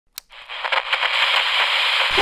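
A single click, then a steady crackling hiss with irregular pops, like static or a record's surface noise.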